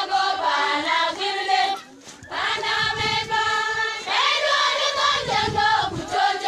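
A group of girls singing together in chorus, unaccompanied. There is a brief break about two seconds in, then the voices hold long notes.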